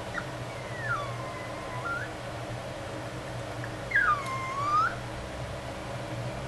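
A dog whining twice: two long, high whines that each slide down in pitch and curl back up, the second about two seconds after the first ends, over a steady low hum.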